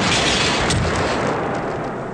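Large fire burning, a loud, dense roar and crackle of a blazing building with one sharper crack about a second in, easing a little toward the end.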